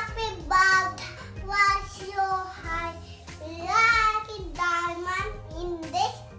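A toddler singing in a high child's voice, in short phrases of held notes that glide up and down.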